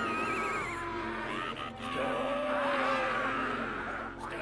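Animated film soundtrack: high, gliding, creature-like calls, one warbling quickly in the first second and another rising and falling a couple of seconds in, over a sustained lower tone.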